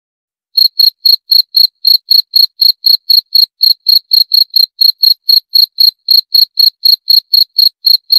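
Cricket chirping: short, evenly spaced high-pitched chirps, about four a second, starting up after a brief silence about half a second in.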